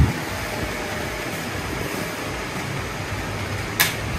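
Steady whir of small electric motors, with one sharp click shortly before the end.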